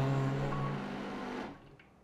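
Ascaso Steel Duo PID espresso machine flushing water through its group head into the steel drip tray, its pump running under the tail of fading background music. The pump and water stop abruptly about one and a half seconds in.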